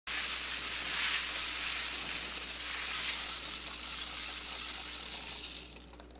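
Hand-cranked lottery ball drums spinning, the numbered balls tumbling and rattling inside as a steady, dense rattling hiss that dies away near the end as the drums stop and the balls are drawn.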